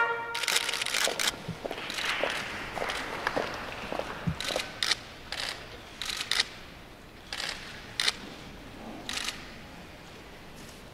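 SLR camera shutters clicking, dozens of sharp single clicks at irregular spacing that thin out and grow fainter over the seconds, over a faint rustle. A brass fanfare cuts off at the very start.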